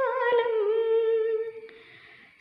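A woman singing a Malayalam Christian devotional song unaccompanied, holding a long wavering note that fades out about one and a half seconds in, leaving a pause for breath.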